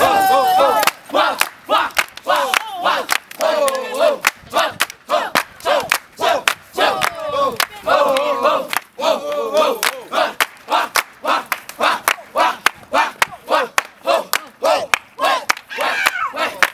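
A crowd of young people shouting and cheering over steady rhythmic hand claps, about two claps a second, cheering on dancers in a circle.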